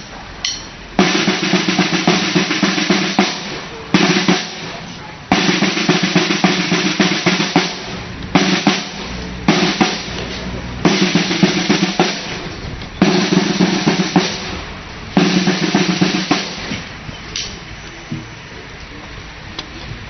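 Two marching snare drums played in a series of loud drum rolls, breaking off and restarting several times, then stopping a few seconds before the end.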